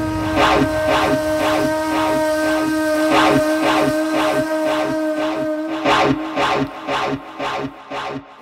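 Breakdown of an electronic drum and bass track: a held synth chord over a steady ticking percussion pattern, with the bass dropped out. About six seconds in the chord falls away, leaving sparse, broken hits.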